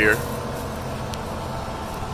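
Diesel engine of a large tracked farm tractor running steadily as the tractor passes close by, a low even rumble.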